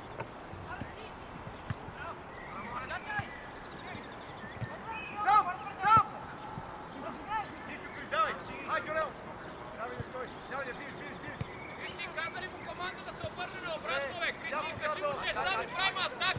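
Shouts and calls from football players and coaches across the pitch, unclear words over a steady outdoor background. The loudest calls come about five to six seconds in, and the voices grow busier after about twelve seconds.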